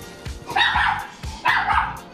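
A dog barking twice, about a second apart, over background music.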